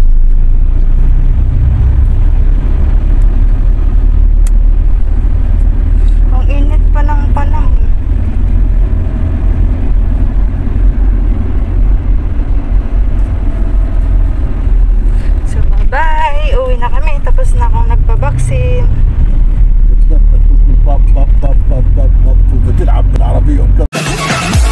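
Steady low rumble of a car cabin while riding in the back seat, with brief voices twice: about 7 seconds in, and for a few seconds past the middle.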